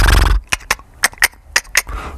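A short buzzy horse-like snort, then three pairs of sharp clip-clop hoof clicks.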